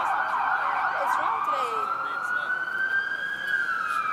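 Emergency vehicle siren sounding loudly, drowning out talk: it warbles at first, then holds a slow wail that rises for a few seconds and begins to fall near the end.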